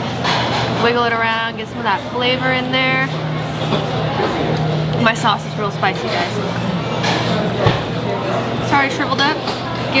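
Voices over background music, with a steady low hum beneath and a single soft thump about three-quarters of the way through.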